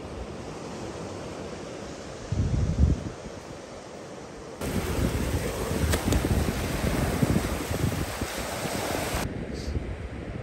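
Waves washing in over sand in the shallows: a steady rush of foaming surf that jumps suddenly louder about halfway through and cuts off abruptly near the end. A brief low wind buffet on the microphone comes just over two seconds in.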